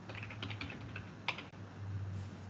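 A quick run of keystrokes on a computer keyboard as a word is typed: about ten light clicks in the first second or so, ending with a sharper one, over a low steady hum.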